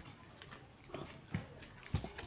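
Faint rustling and a few light knocks as a hand tears a kulcha flatbread on a paper plate.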